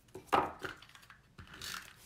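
Sharp clicks and knocks of craft scissors and a tape runner handled on a hard table top, the loudest about a third of a second in, with a few lighter ones after.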